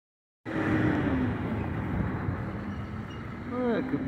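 Road traffic noise: a steady rush of a vehicle going by on the street, somewhat louder in the first second. A man's voice begins near the end.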